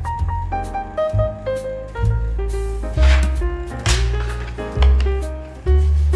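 Background music: a mellow instrumental with a deep bass line and a melody that moves note by note.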